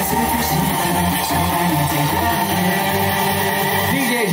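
Loud DJ-mixed pop music playing over the speakers: an instrumental passage without vocals, over a steady bass line.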